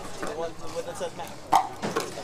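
Pickleball paddles hitting a plastic pickleball during a rally: two sharp pops near the end, about a third of a second apart, over a murmur of voices.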